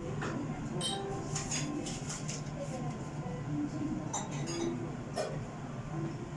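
Restaurant ambience: indistinct background voices with a few sharp clinks of dishes and glassware.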